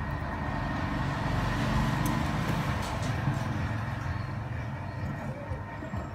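Steady low rumble, like a vehicle engine, with a faint steady hum above it. It swells a little about two seconds in, and a few light clicks sound in the middle.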